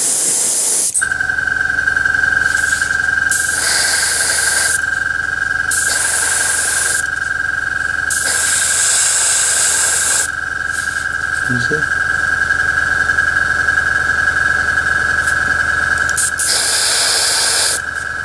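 Airbrush spraying paint in short hissing bursts, about five of them, each a second or two long. From about a second in, a small air compressor runs underneath with a steady hum and a high whine.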